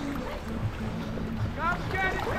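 Small waves lapping and sloshing around a camera held at the sea's surface, over a low steady hum. A voice rising in pitch comes in near the end.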